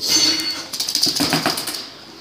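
Quick, irregular clicks and taps of a small dog's claws on a hardwood floor as it scurries about. They thin out and grow quieter near the end.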